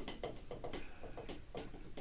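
Faint, unevenly spaced clicks and taps over a low hum.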